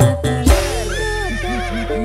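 Live band music on keyboard and kendang hand drum. About half a second in, the drums drop out and held keyboard tones warble up and down in pitch.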